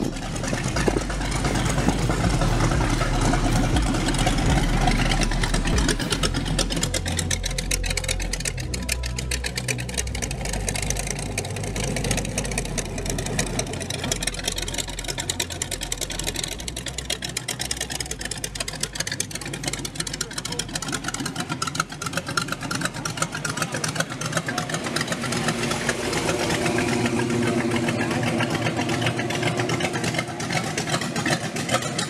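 Cars driving slowly past at low speed, their engines running with a continuous low rumble. Among them is an old-style hot rod coupe with an exposed engine. People talk in the background.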